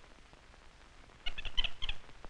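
Capuchin monkey chattering: a quick run of short, high squeaks lasting under a second, starting a little over a second in.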